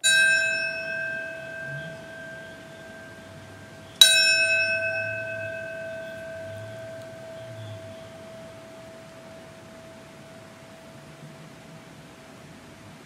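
A bell struck twice, about four seconds apart, each stroke ringing on and slowly fading. It is the tolling of a bell that marks a moment of silence.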